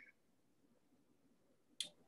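Near silence, with a short faint tone at the very start and a brief sharp click near the end.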